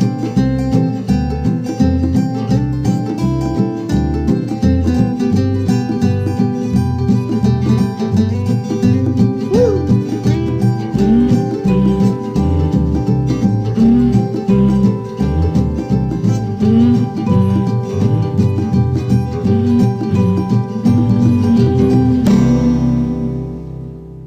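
Instrumental ending of an acoustic song: acoustic guitar playing a steady rhythm with no singing. Near the end it settles on a final chord that rings out and fades.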